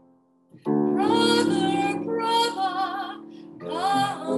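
A woman singing a phrase of an opera aria with vibrato, accompanying herself on a grand piano. Piano and voice come in together after a brief pause about half a second in, with a new phrase starting near the end.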